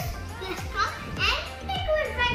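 A young boy talking in an animated voice, his pitch gliding up and down, over a steady low hum.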